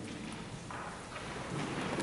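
Rustling and shuffling of people sitting down in a church, a steady, unpitched noise that grows a little louder in the second half.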